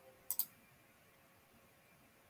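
Two quick computer-mouse clicks, about a tenth of a second apart, a third of a second in.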